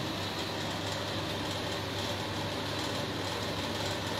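A steady low mechanical hum with hiss, even throughout, with no distinct knocks or events.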